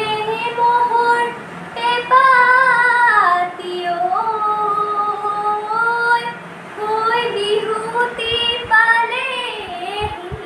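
A young woman singing alone in a high voice, holding long wavering notes that slide between pitches, with short breaks between phrases. A few soft low thumps come near the end.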